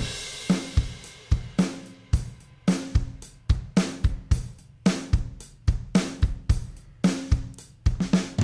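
Logic Pro X virtual drum kit playing back a steady groove of kick, snare, hi-hat and cymbals at 110 bpm, while a heavily compressed parallel compression bus is faded up underneath it from silence to add punch and body.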